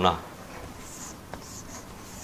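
A man's voice ends on a last syllable, then a quiet small room with a few faint, soft scratches and one small click about two thirds of a second later.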